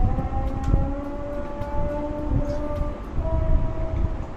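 Muslim call to prayer (adhan) from a mosque loudspeaker, long held notes that step slowly in pitch: the Maghrib call at sunset that ends the day's fast. A steady low rumble runs underneath.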